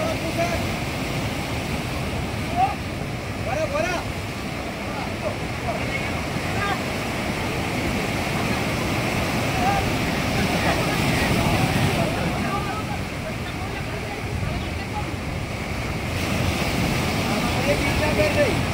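Sea surf washing in and breaking on the shore, swelling louder about ten seconds in and again near the end, with wind buffeting the microphone. Distant voices call out over the surf.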